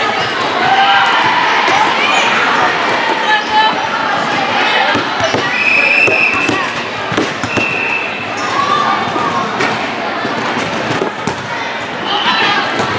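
A volleyball bouncing and being struck on a gym floor, with several short squeaks around the middle, among echoing voices of players and spectators in a large indoor hall.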